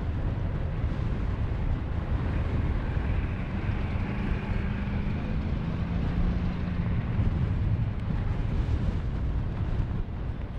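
Propeller aerobatic monoplane (MXS-RH) flying past and climbing, a steady engine-and-propeller drone over a rumble. A buzzing tone swells in the middle and drops slightly in pitch about six seconds in.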